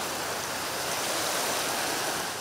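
Steady outdoor ambience at a riverbank: an even hiss with no distinct events, fading a little near the end.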